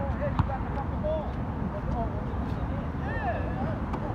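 Faint voices of players calling out across an outdoor basketball court over a steady low rumble, with a single sharp knock about half a second in.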